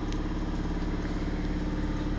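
A motor engine idling: a steady, unchanging low hum with a couple of held tones.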